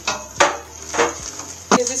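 Three sharp knocks of a wooden spoon against an aluminium cooking pot while rice is stirred. The first knock is the loudest. A voice starts near the end.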